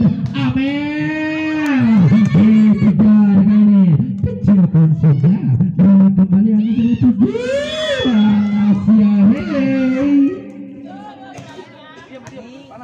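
Voices in long, drawn-out calls or singing that rise and fall in pitch, with many short sharp clicks; the sound drops much quieter about ten seconds in.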